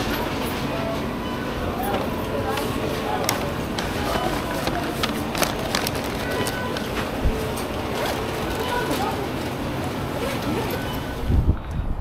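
Fast-food restaurant ambience: background voices and music over kitchen noise with a few short beeps, while a paper takeout bag is handled and slid into an insulated delivery bag.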